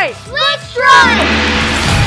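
A shouted "Strike!", then a loud rushing burst with a falling sweep over background music, like a whoosh or blast sound effect marking the strike.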